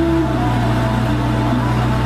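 Steady low rumble of a car on the move, with a few faint sustained tones over it that change pitch now and then.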